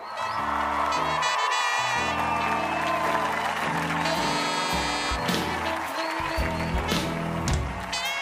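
Jazzy big-band closing theme with brass playing sustained notes, with studio audience applause underneath.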